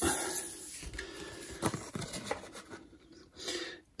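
Trading cards handled on a countertop: soft rubbing and sliding, with a few light taps near the middle.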